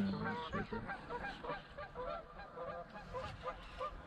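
A flock of geese honking: many short calls overlapping, faint and steady in rate.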